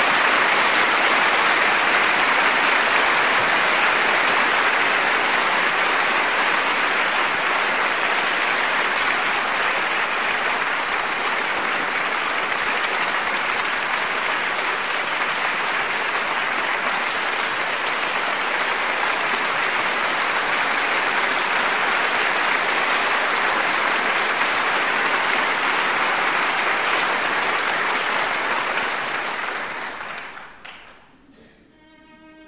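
Theatre audience applauding steadily for a long stretch, slowly easing and then dying away near the end.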